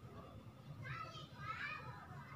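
Young children's high-pitched voices chattering and calling, louder in the second half, over a low steady background hum.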